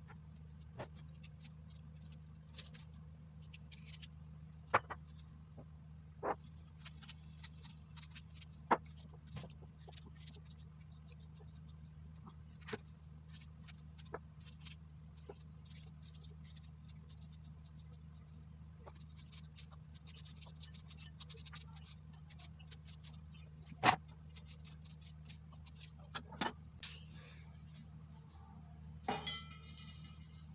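Scattered sharp clicks and small knocks of kitchen work, a few louder than the rest, at irregular moments over a faint steady low hum and a fine crackle of tiny ticks.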